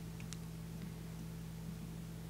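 Steady low electrical hum with a faint hiss, the quiet noise floor of the recording, with one faint click shortly after the start.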